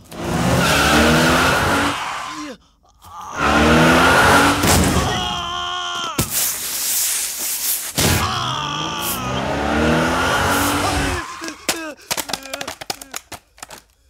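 A car engine revving hard three times, each rev climbing in pitch, with tyre squeal between the revs. Near the end come scattered short knocks and clatter.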